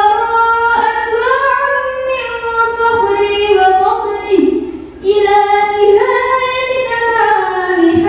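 A young girl singing sholawat (devotional song praising the Prophet) into a microphone, with no instruments, in long held notes that glide and turn between pitches. There is a short breath pause about five seconds in.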